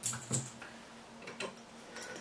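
Fishing lures being handled on a table: about four light clicks and taps at uneven spacing, one with a dull knock under it.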